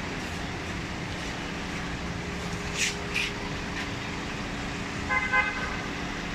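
Street traffic with a vehicle's engine running steadily. Two short hissing sounds come just before the middle, and near the end a short, broken high tone sounds, a car horn toot.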